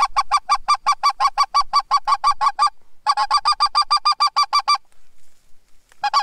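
Goose call blown in rapid, evenly spaced clucks, about six a second, in two runs with a short break between them; the second run stops a little before the end.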